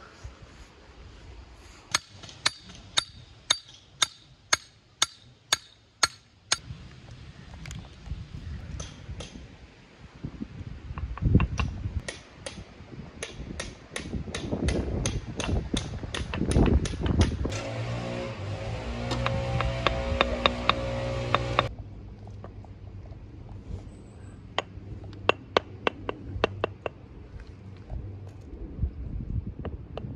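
Hammer tapping porphyry setts down into their bedding to line and level, sharp taps about two a second in several runs. A steady machine hum joins about two thirds of the way in and cuts off suddenly.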